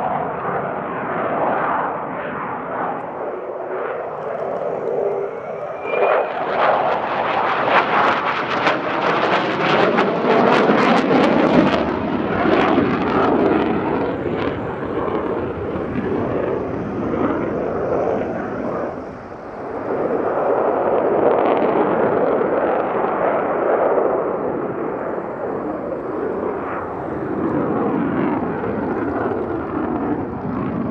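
The twin General Electric F404 turbofan engines of a Swiss F/A-18C Hornet jet fighter in display flight, a continuous loud jet roar. It swells into a harsh crackle from about six to twelve seconds in, dips briefly near nineteen seconds, then builds again.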